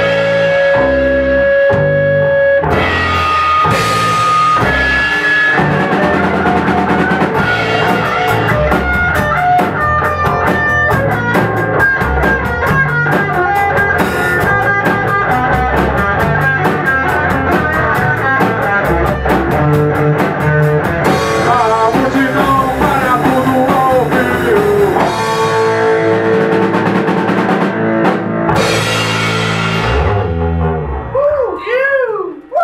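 Rock band playing an instrumental passage: an electric guitar carries the lead over bass guitar and a drum kit. A long held guitar note at the start gives way to fast runs of notes over busy cymbals, and the song comes to a stop near the end.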